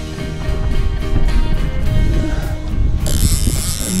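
Conventional fishing reel being cranked against a fish on the line, its gears clicking, under background music with held notes. A sudden burst of hiss comes in the last second.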